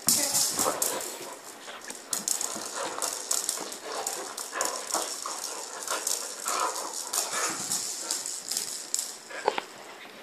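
A kelpie playing with a ball on timber floorboards and a rug: many short clicks and knocks from paws and the ball, with a few short dog noises in between.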